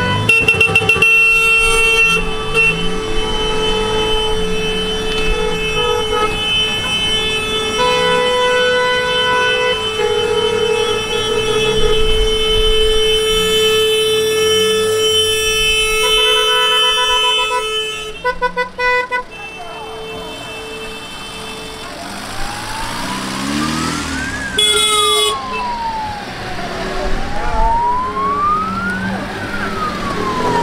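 Car horns honking as a procession of Fiat Panda 4x4s drives past: long held blasts that change pitch, then a run of short beeps. Later a wailing siren-style horn rises and falls twice, with a short horn blast between.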